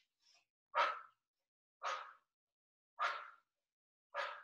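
A woman's short, forceful exhalations through the mouth, a sharp "ch" breathed three times about a second apart. It is the percussive breath that paces the single leg stretch in Pilates.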